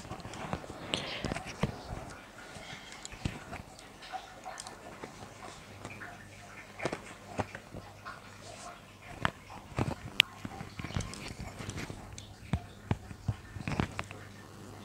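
Tarot cards being dealt and laid down on a cloth-covered table: irregular light taps, slaps and slides of card on card and card on cloth.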